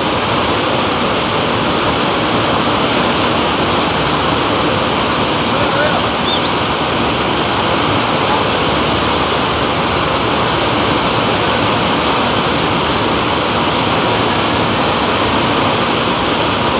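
Steady rushing of the pumped sheet of water flowing up the padded slope of a wave-simulator ride, loud and unbroken.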